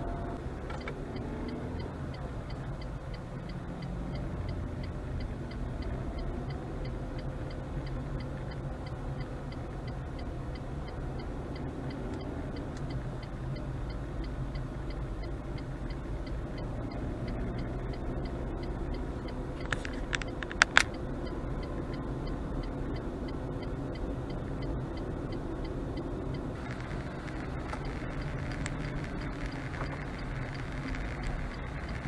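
Car interior road and engine noise at low speed: a steady low rumble, with faint, rapid, even ticking through most of it and a few sharp clicks about twenty seconds in.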